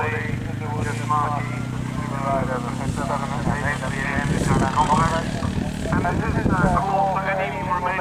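Indistinct talking over a steady, low engine drone.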